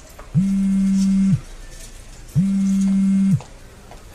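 Smartphone vibrating on a table with an incoming call: two low buzzes, each about a second long, a second apart.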